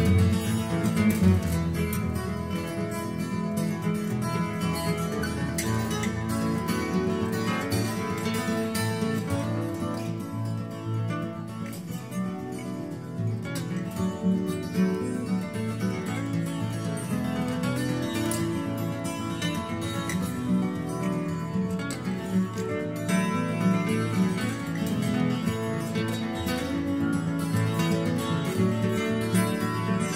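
Background music led by plucked acoustic guitar, with many quickly picked notes.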